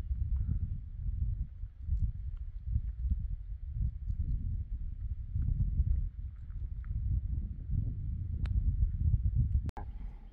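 Wind buffeting the microphone: a low rumble that rises and falls in gusts. It drops out briefly near the end.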